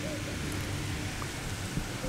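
Steady outdoor background noise with a low wind rumble on the microphone.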